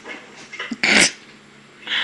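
A dog makes one short, loud sound about a second in, with softer dog sounds just before it.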